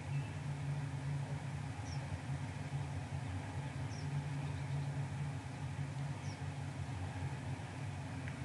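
Quiet park ambience: a steady low hum, with a faint high bird chirp about every two seconds.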